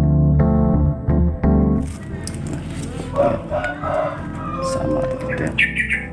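Electric-piano background music, then from about two seconds in, plastic wrap crinkling and rustling as it is pulled off a circuit board.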